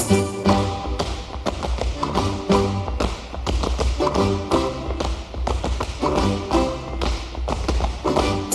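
Accordions playing a fast Russian folk dance tune, with the dancers' boots stamping and tapping on the stage floor in quick rhythm through the music.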